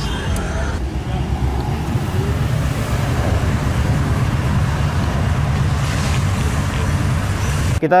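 Mercedes-AMG S63 Cabriolet's twin-turbo V8 running with a steady, deep low rumble, mixed with street traffic; it cuts off suddenly near the end.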